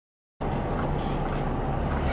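Silence for under half a second, then the steady rumble of a moving car heard from inside the cabin, engine and road noise.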